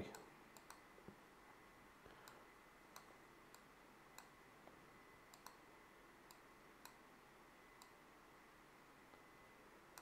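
About a dozen faint computer mouse clicks, spaced irregularly, over near-silent room tone with a faint steady tone underneath.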